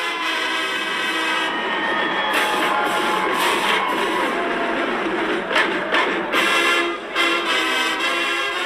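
Outro theme music: held chords with several sharp hits through it.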